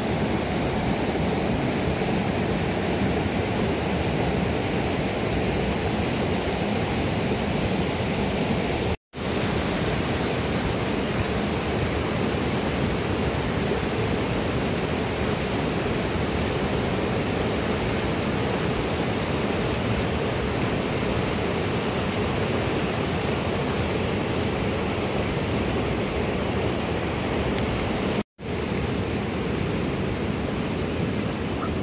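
Steady rush of a fast, white-water mountain river, a continuous even roar that breaks off for an instant twice, about nine seconds in and near the end.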